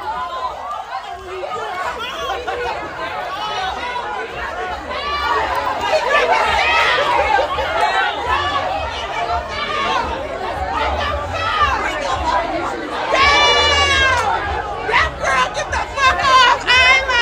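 A crowd of people talking and calling out over one another, over a low rumble. About thirteen seconds in, one voice rises into a loud, high shout.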